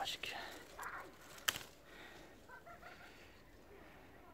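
Apple-tree leaves and branches rustling as apples are picked by hand, with one sharp click about one and a half seconds in. Faint bird chirps in the background.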